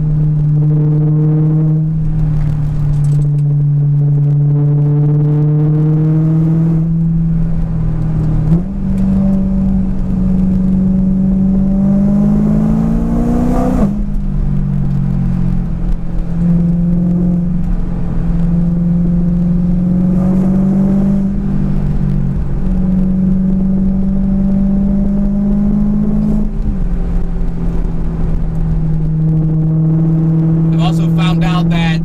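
A supercharged E92 BMW M3's V8 engine heard from inside the cabin while driving through curves, over a low road rumble. The engine note mostly holds steady, steps up in pitch about eight seconds in, then climbs and drops sharply at about fourteen seconds as it changes gear, with smaller rises and falls later on.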